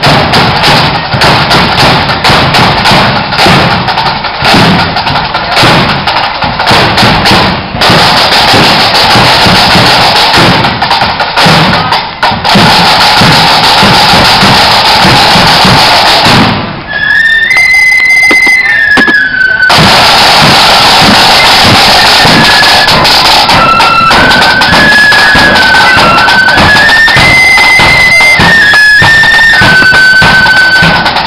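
Marching flute band at close range, very loud. Side drums are beating for the first half. A little over halfway in, the flutes strike up a high, shrill tune over the drums.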